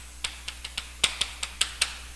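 Chalk writing on a blackboard: a quick, uneven run of about eight short, sharp taps as characters are written.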